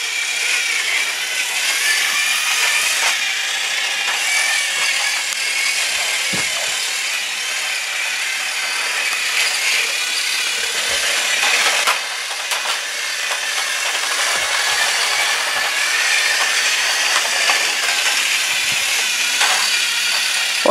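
Battery-powered Fisher-Price TrackMaster Thomas toy engine running along plastic track: the steady high whirr of its small electric motor and gears.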